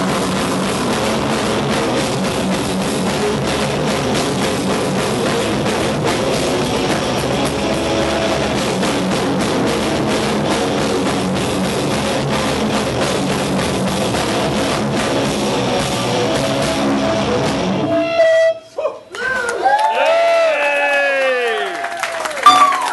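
Black metal band playing live: dense, loud distorted electric guitars and drum kit. The music cuts off suddenly about eighteen seconds in, and is followed by a few seconds of pitched tones sweeping up and down in arcs.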